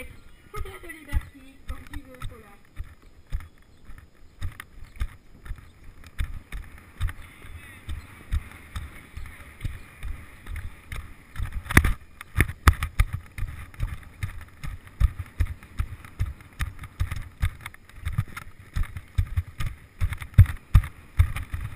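Helmet-mounted action camera on a rider cantering a horse in a sand arena: regular low thuds of the horse's stride jolting the helmet, with wind rushing over the microphone. A single heavier jolt comes about twelve seconds in.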